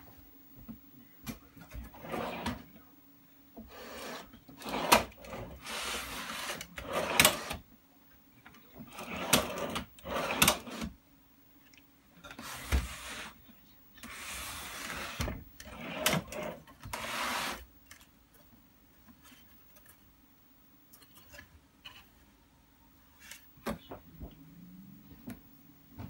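Wooden frame being dragged and turned on a wooden workbench: a series of scraping, rubbing bursts with sharp knocks, mostly in the first three quarters, over a faint steady low hum.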